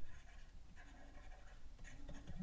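Faint scratching of a stylus on a graphics tablet as a word is handwritten.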